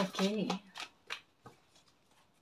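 A deck of tarot cards being shuffled overhand by hand, giving a few separate soft card clicks up to about a second and a half in. A short voiced sound from a woman's voice comes in the first half second.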